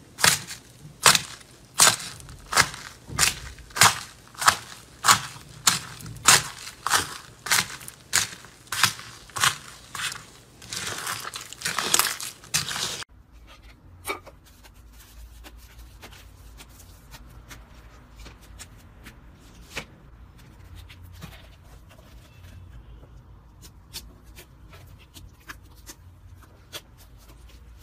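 Fingers pressing into crunchy pink slime topped with foam beads, a loud crackle with each press, about one and a half a second. About halfway through it stops suddenly, giving way to faint scattered clicks and crackles from another slime being handled.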